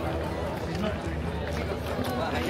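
Background chatter of several people's voices in a crowd, steady with no single loud event.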